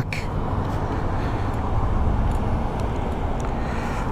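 Steady low rumble of surrounding road traffic and open-air noise, with no engine note from the two-stroke motorcycle, which has stalled at idle.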